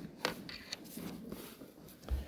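A congregation getting to its feet: faint rustling with a few light knocks and clicks.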